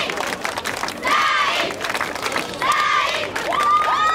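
Crowd of children cheering and shouting together in high-pitched bursts, about one every second and a half, with the last shout rising in pitch near the end.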